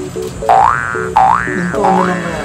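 Cartoon 'boing' sound effect: three quick rising springy glides, about two-thirds of a second apart, over light background music.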